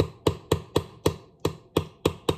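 A metal fork striking the bottom of a ceramic bowl as it chops and mashes hard-boiled eggs: quick, regular clicks, about four a second, with a brief pause past the middle.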